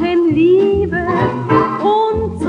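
Estrada dance-orchestra music played from a digitized 78 rpm gramophone record: a long held melody note, slightly wavering, over a pulsing bass and rhythm.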